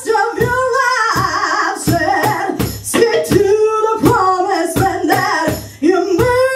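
A woman singing a blues song live with a small band: electric bass and electric guitar behind her and a steady percussion beat of about three hits a second. She holds long sung notes.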